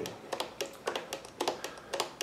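Light, irregular clicks and taps from fingers working the control stick of a handheld RC transmitter.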